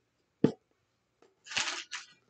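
Oracle card being handled on a table: one sharp click about half a second in, then a brief soft rustle near the end.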